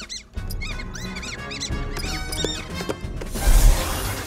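An animated mouse squeaking rapidly: many short, high-pitched chirps that rise and fall in pitch, over an orchestral film score. Near the end there is a loud rushing burst.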